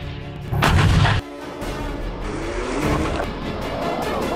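A single artillery blast from a Primus 155 mm self-propelled howitzer firing, starting about half a second in and cut off abruptly about a second later, over background music.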